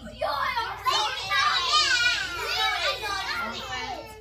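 A group of kindergarten children talking and calling out all at once, many high voices overlapping, loudest in the middle.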